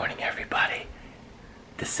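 A man talking quietly, with a short pause about a second in before he speaks again.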